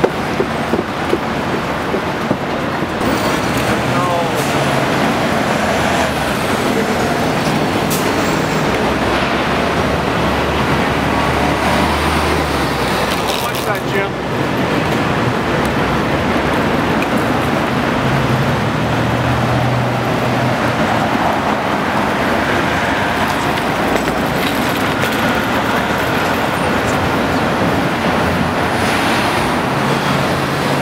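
City street traffic noise with a double-decker bus engine running, its low hum coming and going, and indistinct voices at times.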